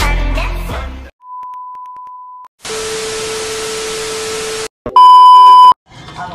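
Intro music dies away about a second in, followed by a series of electronic test-tone-like sounds. First comes a faint steady beep, then about two seconds of hiss with a lower steady tone running through it, and near the end a short, very loud beep.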